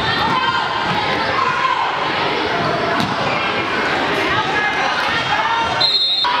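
Live sound of a basketball game in a gym hall: the ball bouncing and sneakers on the hardwood as players run the court, with players and spectators shouting.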